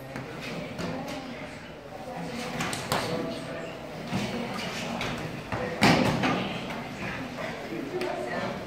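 Wrestlers scuffling and thudding on a foam wrestling mat, with a sharp thump, the loudest sound, just before six seconds in. Indistinct voices talk underneath.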